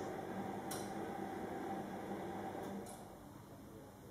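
Small water-circulating pump of a Zonecheck sprinkler flow-switch test unit running with a faint steady hum, quietening near the end.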